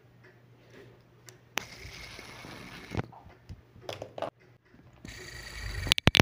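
Plastic fidget spinner spun close to a microphone: two steady whirring spins, the first starting about a second and a half in and the second near the end, with a few handling clicks between.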